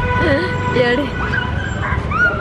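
Honda Activa scooter's engine running just after being started, a steady low rumble, with short high-pitched yelps over it.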